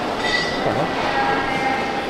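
Steady rumbling noise of a large airport terminal hall, with a few faint steady tones running through it.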